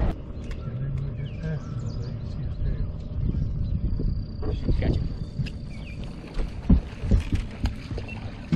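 Outdoor rumble on a fishing boat's deck with faint, indistinct voices and a few sharp knocks, the loudest about seven seconds in.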